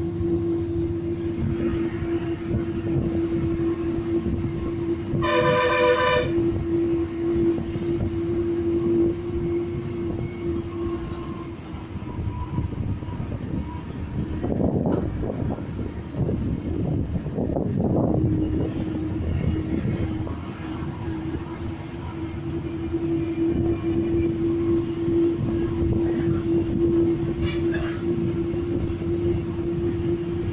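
Engine and drivetrain of a KSRTC bus running under load on a climbing ghat road, a steady drone with a constant tone through it and swells of rumble about halfway. A vehicle horn sounds once, about a second long, around five seconds in.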